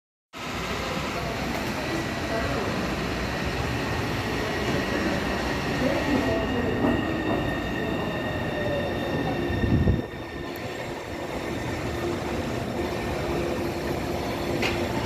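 Taipei Metro C301 electric train pulling into a station and braking: a steady rumble of wheels on rail, with the electric drive's whine falling in pitch as it slows. A loud low surge just before ten seconds, then the noise drops as the train nears a stop.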